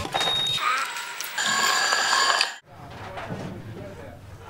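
Clear, bell-like metallic ringing tones lasting about two seconds, cut off suddenly about two-thirds of the way in. A quieter background with a low hum follows.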